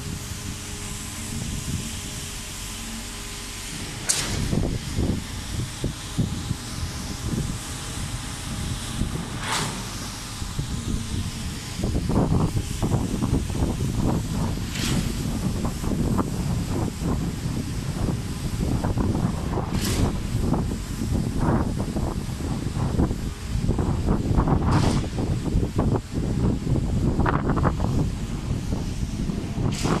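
Wind buffeting the microphone: an uneven, rumbling rush that gets stronger about twelve seconds in. A few sharp clicks come several seconds apart.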